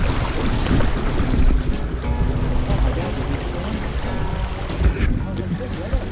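Wind buffeting the microphone over the steady rush of a shallow stream's riffles, with a single thump about five seconds in.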